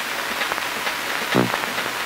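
Steady hiss from an old 16-mm film soundtrack, with a brief vocal sound about one and a half seconds in.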